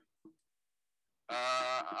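A man's drawn-out, hesitating "uh", held on one steady pitch for about half a second, coming in after a second of near silence and running straight into speech.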